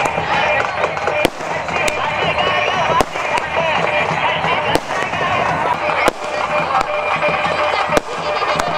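Fireworks going off, about five sharp bangs spaced a second or two apart, over a steady loud din of voices and music.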